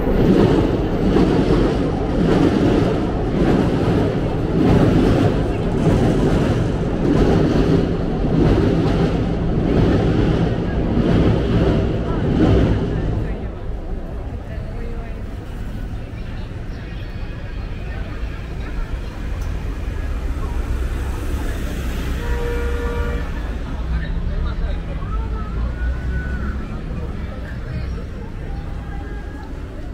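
Train running over the steel railway bridge overhead, heard from underneath: a loud rumble with a rhythmic clatter about once a second that fades out about halfway through. After that, street traffic and passers-by.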